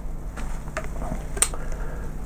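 Faint handling noises at a desk over a steady low hum, with one sharp click about one and a half seconds in.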